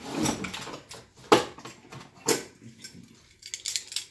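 Small tools and parts being handled on a tabletop: several sharp knocks and clatters as things are picked up and put down. The loudest come about a second and a third and two and a third seconds in, with a quick run of light clicks near the end.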